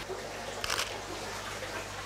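A digital SLR camera's shutter fires once, about two thirds of a second in, over a steady low hum.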